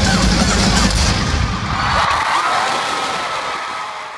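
Live rock band and arena crowd at the end of a song: the band's heavy low end stops about two seconds in, leaving the crowd cheering, which slowly fades away.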